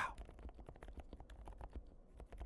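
Faint, quick typing on a mechanical keyboard fitted with Kailh Prestige silent switches and a tape mod: a steady run of soft, muted keystrokes.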